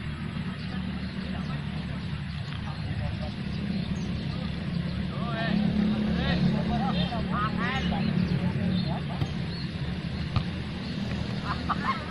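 Distant shouts and calls of footballers across an open pitch, busiest in the middle of the stretch and again near the end, over a steady low rumble.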